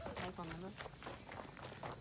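Footsteps running on a wood-chip trail, with a faint voice in the first moments.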